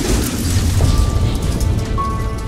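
A cinematic boom sound effect for a car crash, a loud hit that dies away into a low rumble over dark background music.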